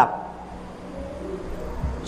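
A pause in a man's speech: quiet room tone with a steady low hum and some low rumble, swelling briefly near the end.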